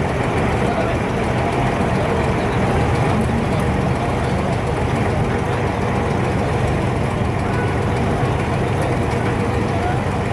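Inboard diesel engine of a wooden abra water taxi running with a steady low drone, with passengers' voices in the background.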